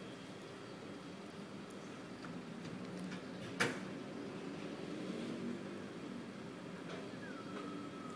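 Quiet hand knitting on metal needles: faint handling ticks and one sharp click about three and a half seconds in as the needles tap together, over a steady low background hum.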